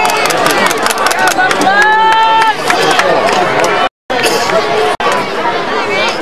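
Football crowd in the stands shouting and cheering, many voices overlapping, with one long held shout about two seconds in and sharp claps or clicks. The sound cuts out for a moment about four seconds in.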